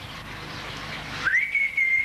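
A man whistling one clear note through pursed lips: a quick upward slide, then held steady for about a second, starting a little past halfway.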